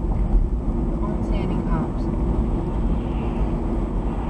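Steady road and engine noise of a moving car, heard inside the cabin through a dash cam's microphone.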